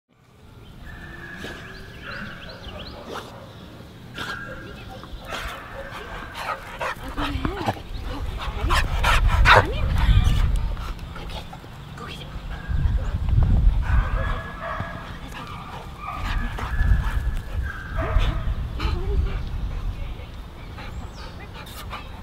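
A Boxer mix dog vocalising in short bursts as it plays, with barks and high whines that come and go. Under it there are scattered clicks and a low rumble that swells around the middle and again about two-thirds through.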